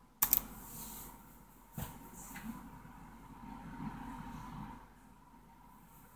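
Handling noise from a hand-held phone: a few sharp clicks just after the start and another about two seconds in, with faint rubbing in between, then dead silence for the last second or so.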